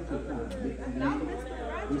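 Women's voices talking over one another, over a steady low hum.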